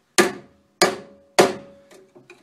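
Three hammer taps on a sleeve-installer tool, driving a Speedi-Sleeve further onto a boat trailer axle spindle, evenly spaced with each strike ringing briefly.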